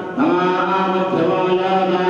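Male voices chanting mantras: a phrase starts just after the opening with a rising note that settles into a held pitch, with a steady low held note beneath.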